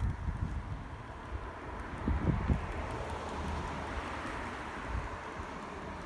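Wind rumbling and buffeting on the microphone outdoors, with a street-traffic hiss that swells in the middle and fades, like a car passing.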